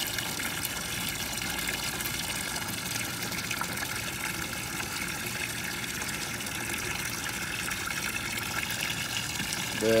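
Water running steadily into a shallow plastic tub, a continuous gushing hiss that holds one level throughout.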